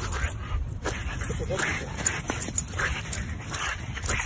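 French bulldog digging in sand, its paws scraping in quick scratchy strokes, with short whimpers. Wind rumbles on the microphone underneath.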